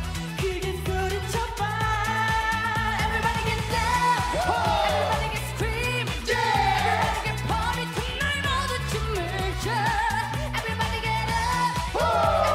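Mixed male and female vocal group singing a Korean dance-pop song live into handheld microphones, with sliding vocal lines and harmonies over instrumental backing that has a steady, repeating bass line.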